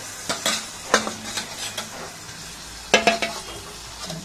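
Steel ladle stirring chicken curry in an aluminium pressure cooker, with several sharp ringing clinks of metal on the pot, the loudest about one second and about three seconds in, over the low hiss of the curry frying.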